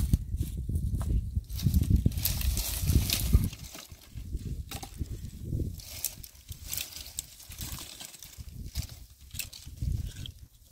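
Dry branches and twigs rustling, scraping and snapping as they are pulled from a brush pile. A heavy low rumble fills the first three and a half seconds, then only scattered crackles and clicks remain.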